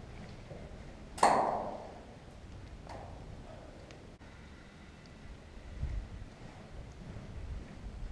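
A single sharp clink of something hard being struck, with a short ringing tail, followed by a much fainter click about two seconds later.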